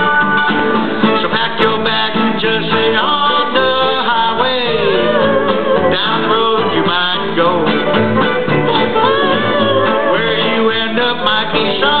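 Live acoustic string band playing: fiddle, plucked strings and upright bass, with a melody line that slides up and down in pitch.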